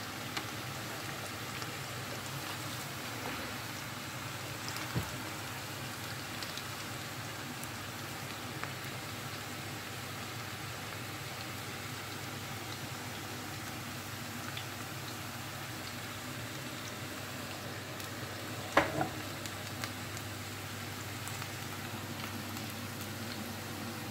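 Potato strips frying in vegetable oil in a skillet, a steady sizzle, with the low hum of the range hood fan beneath. A short louder sound comes about three-quarters of the way through.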